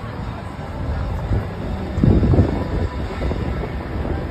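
Low rumble of wind buffeting the microphone outdoors, mixed with street noise, swelling briefly about two seconds in.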